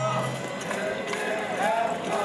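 A festival crowd: many voices of dancers and spectators overlapping in a dense, continuous babble.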